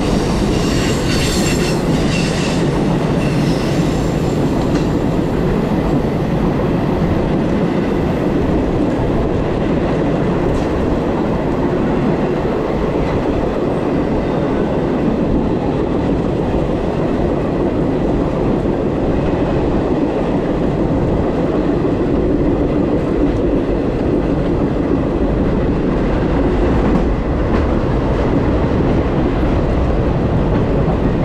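Steady rolling rumble of a moving passenger train, picked up on the rear open platform of its last car, with a double-stack container freight train running close alongside on the next track. A faint high squeal rings in the first few seconds.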